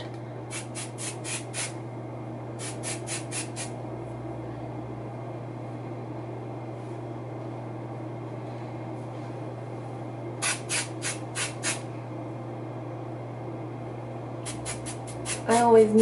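Aerosol hair texture spray fired in quick short bursts, five or six in a row, in four groups: near the start, around three seconds, around eleven seconds and near the end. A steady low hum runs underneath.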